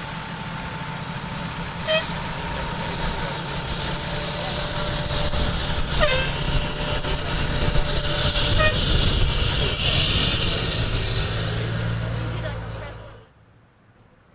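Fire engine's diesel engine running as the truck drives slowly past, a low rumble growing louder to a peak about ten seconds in, with a burst of hiss there. The sound cuts off suddenly about a second before the end.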